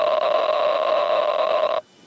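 Bench grinder wheel grinding the end of a dense metal bar, presented as uranium or plutonium, throwing sparks off the pyrophoric metal. It is a steady grinding sound that starts sharply and cuts off shortly before the end.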